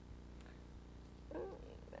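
Quiet studio room tone with a low steady electrical hum, and a brief faint voice sound, like a soft chuckle, about a second and a half in.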